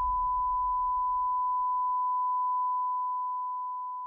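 A steady, pure electronic beep tone holding one pitch, then fading out from a little before three seconds in. A low rumble beneath it dies away over the first two seconds or so.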